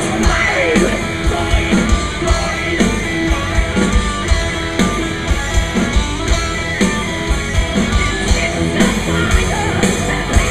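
Heavy metal band playing live: distorted electric guitars, bass and pounding drums, heard from the audience.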